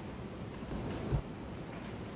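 Steady low hiss of a quiet room picked up by an open microphone, with a short low rumble about a second in that ends in a single dull thump.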